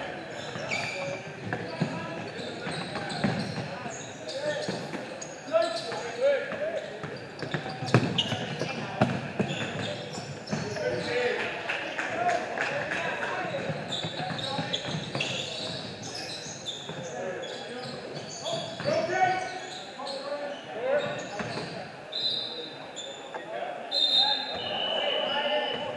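Basketball bouncing repeatedly as it is dribbled on a hardwood gym floor, with players' and onlookers' voices in a large hall.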